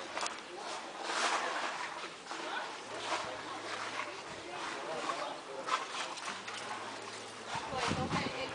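Indistinct voices with no clear words, among scattered short outdoor noises.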